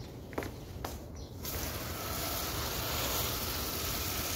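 A garden hose spray nozzle starts spraying water about a second and a half in, a steady hiss, after a couple of faint knocks.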